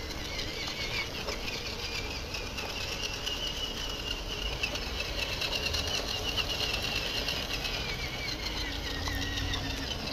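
Electric motor and gear train of a Tamiya CR-01 RC rock crawler whining as it drives over grass. The whine rises in pitch a few seconds in and falls again near the end as the throttle changes, over a low rumble.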